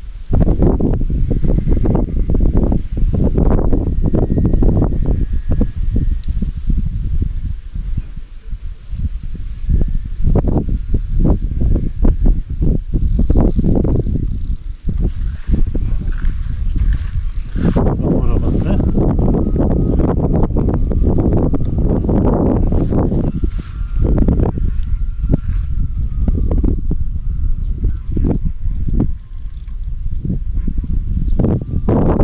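Wind buffeting the microphone in loud gusts, with a fishing reel being wound as a carp is played on a bent rod.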